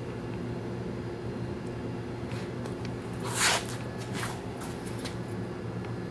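A steady low hum with a few light clicks and a brief rustle about three and a half seconds in, the sound of handling around the open engine.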